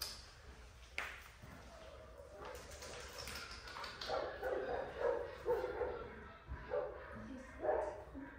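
Miniature poodle puppy barking in a string of short barks through the second half, after one sharp knock about a second in.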